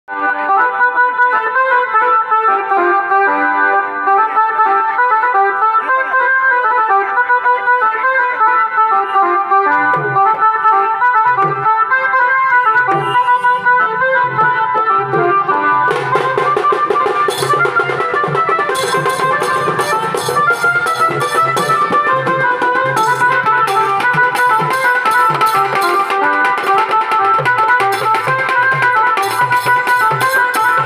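Bengali wedding-band music: a Casio electronic keyboard plays the song's melody alone at first, a bass line joins about ten seconds in, and about halfway through stick-beaten barrel drums and cymbals come in with a fast, steady beat.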